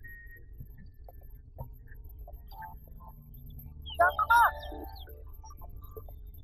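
Steady low rush of water pouring over river rapids, with a short, loud call that bends up and down in pitch about four seconds in.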